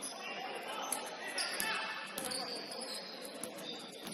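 Basketballs bouncing on a hardwood gym floor: a handful of scattered thuds echoing in a large hall, with voices in the background.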